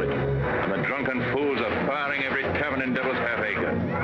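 A crowd of voices shouting and talking over one another, a steady din with no single voice standing out.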